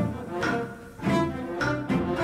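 Orchestral music: low bowed strings play short, accented notes, about two a second.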